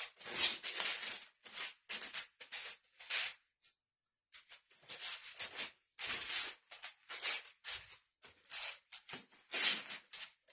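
Short swishing and scuffing bursts, roughly two a second, with a gap of about a second some four seconds in. They come from two sticks being swung through the air and bare feet stepping and sliding on a floor mat during a dual-stick form.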